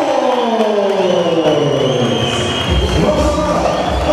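A crowd cheering over PA music. A long tone slides down in pitch over the first two and a half seconds, and deep bass comes in near the end.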